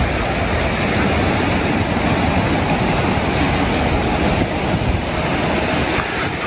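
Steady wash of sea surf breaking on the rocky shore, mixed with wind rumbling on the microphone.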